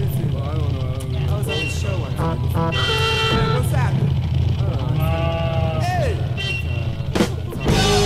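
Intro of a mid-1970s rock track: voices and sliding tones over a steady low drone. The full rock band comes in just before the end.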